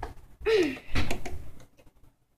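Knocks and clicks from a hand screwdriver driving a screw into the metal hinge frame of a storage box lid, with a short falling tone about half a second in.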